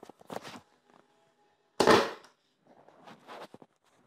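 Grundig 4017 Stereo radio giving short bursts of crackle and static, several in a row with the loudest about two seconds in.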